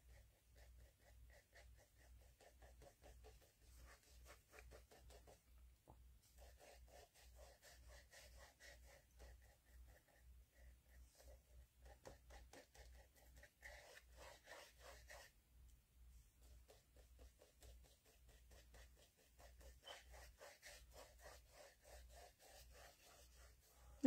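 Faint, quick back-and-forth strokes of a small paintbrush spreading gloss gel medium over paper.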